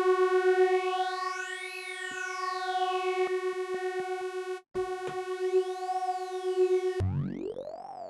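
A sustained software-synthesizer note through a formant filter, giving vowel-like sounds. Its vowel colour glides up and down as the filter's frequency shift and morph are turned. The note stops for a moment a little before five seconds in and comes back. About seven seconds in it changes to a buzzier tone that sweeps up and then down.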